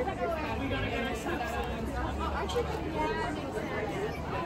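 Indistinct background chatter of several people talking at a distance, over a steady low hum.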